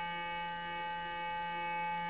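Clarisonic sonic facial brush with a makeup brush head humming steadily as its vibrating bristles blend cream contour on the cheek. A faint tone pulses about twice a second over the hum.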